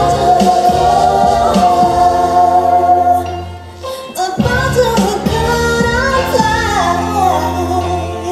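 A woman singing a stage song over instrumental backing: one long held note, a brief drop in level about four seconds in, then a phrase that slides up and down in pitch.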